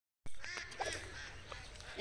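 Faint calls of domestic waterfowl on a village pond: a few short calls in the first second, after the sound briefly cuts out at the very start.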